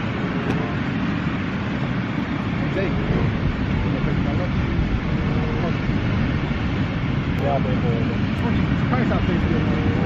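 Steady low rumbling noise of wind buffeting the microphone on an open beach, with a few faint words over it.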